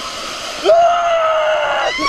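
Water rushing down a water slide flume, then, about two-thirds of a second in, a rider's long held yell that sinks slightly in pitch and lasts over a second.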